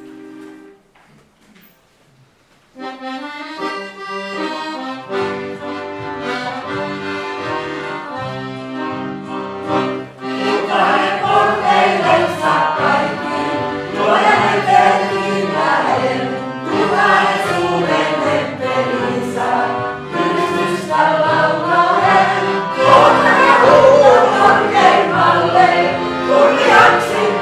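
After a brief lull, an instrument starts playing held chords about three seconds in, and about ten seconds in a congregation joins, singing a hymn together over the accompaniment.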